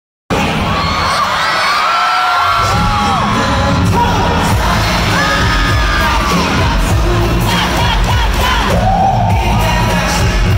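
Arena concert crowd screaming and cheering loudly right by the microphone, with the live playback of a K-pop dance track coming in with a heavy bass beat about two and a half seconds in; high screams keep rising over the music.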